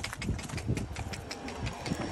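A quick, even run of light ticks, about six or seven a second: a small dog's claws clicking on a concrete footpath as it trots, with a few low thumps among them.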